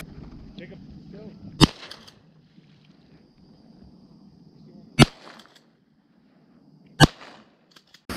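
Three shotgun shots fired at incoming ducks, about a second and a half in, at five seconds and at seven seconds, each followed by a short echo.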